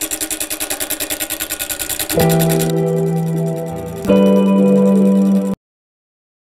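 A turning tool cutting an out-of-round bowl blank spinning on a wood lathe at about 620 rpm: a rapid rhythmic chatter of about ten beats a second as the tool meets the high spots on each turn. About two seconds in, music with guitar-like chords comes in over it, a new chord about two seconds later, and all sound cuts off suddenly just before the end.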